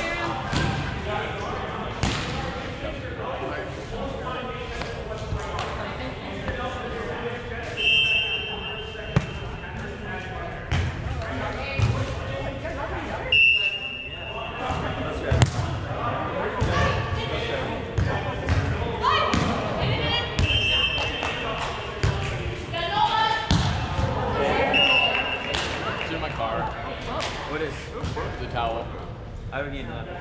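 Indistinct voices echoing in a large indoor sand-volleyball hall, with repeated dull thumps of a volleyball being struck during play and a few short high squeaks.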